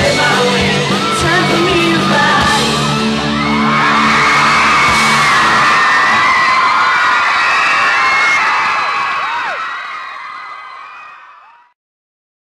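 A live rock band plays the last bars of a song, with drums, bass and vocals. About three seconds in the band stops and a crowd of fans screams and cheers. The screaming fades out near the end.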